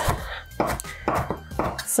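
Kitchen knife chopping fresh cilantro on a wooden cutting board: about five sharp knocks of the blade on the board, roughly half a second apart.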